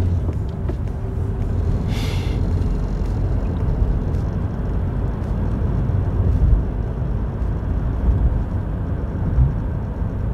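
Car cabin road and engine noise: a steady low rumble of tyres and engine as the car speeds up to about 60 km/h, with a brief hiss about two seconds in.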